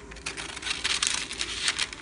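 Scissors snipping through parchment paper, with the stiff paper crinkling as it is turned and cut.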